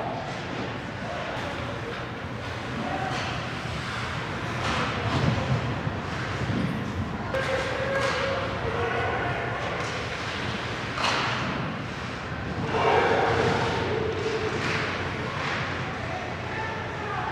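Live ice hockey play: skates scraping and stopping on the ice, thuds of bodies and puck against the boards, and players shouting, with two longer shouts about halfway through and near the end.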